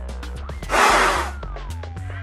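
Electronic background music with a steady bass pattern, slow falling synth tones and ticking clicks. A little under a second in, a short, loud breathy rush: a hard blow through a surgical face mask at a lit candle.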